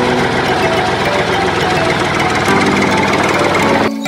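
Small electric motor driving a miniature water pump, running steadily with a dense, rapid buzz that starts and stops abruptly.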